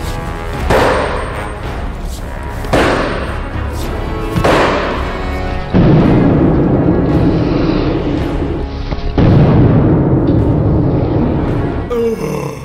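Sledgehammer blows on a slab of bulletproof glass: several heavy impacts a second or two apart, over loud background music.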